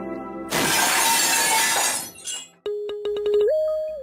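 A sudden loud crash, like glass shattering, lasting about a second and a half. It is followed by a short electronic tune of a few held notes that step up in pitch over rapid clicks, fading out near the end.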